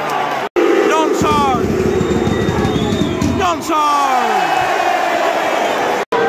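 Football stadium crowd singing and shouting: a loud, sustained mass of voices, with individual shouts close by.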